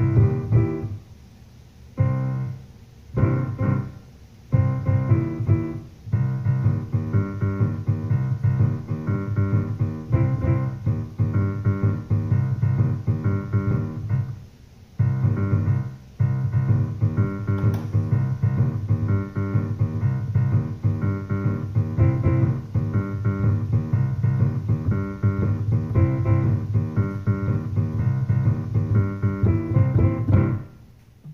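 Digital piano played with both hands: a steady pattern of repeated chords over a strong bass. It breaks off briefly a few times in the first six seconds and once about halfway, then stops just at the end.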